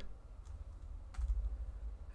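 Two faint computer-keyboard clicks, under a second apart, over a steady low hum.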